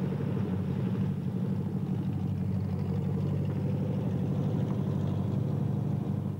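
Volkswagen Beetle's air-cooled flat-four engine running steadily as the car drives, a low, even engine note.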